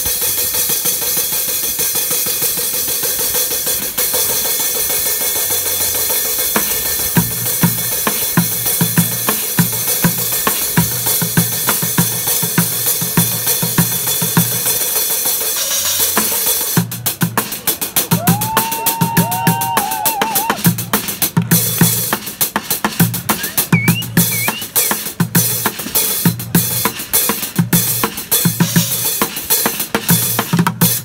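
Street bucket drumming in a funk groove on plastic buckets, cymbals and pots: a constant cymbal sizzle through the first half, with a low bucket bass beat coming in about seven seconds in. From about halfway the playing turns to crisper, separate strikes over the same regular low beat.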